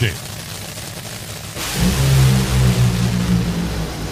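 Top Fuel dragster's supercharged nitromethane V8 at full throttle on a run. It starts suddenly about one and a half seconds in with a loud hiss, and a heavy, steady low engine note follows and holds to the end.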